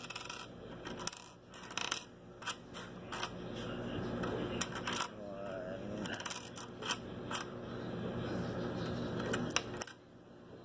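Loose pennies clinking and sliding against each other and on a wooden tabletop as a hand spreads and flips through them, with irregular clicks throughout.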